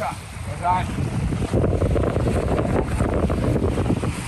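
Strong wind buffeting the microphone, with small waves lapping on a lakeshore. A brief pitched call sounds less than a second in.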